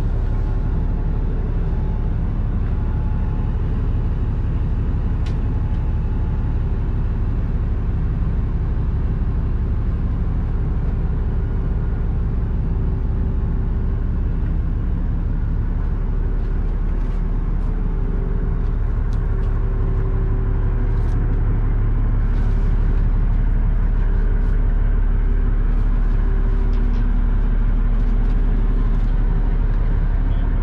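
Fishing boat's engine running steadily while underway: a continuous low drone with a level hum over it, growing a little louder about two-thirds of the way through. A few faint clicks are heard in the second half.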